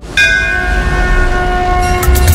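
Channel logo sting: a sudden hit a split second in, then several ringing, bell-like tones held over a low rumble.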